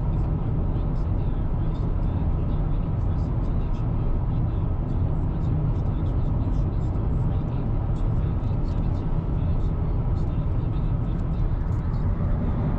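Steady road and tyre noise with a low engine drone, heard from inside a car's cabin while driving on a highway.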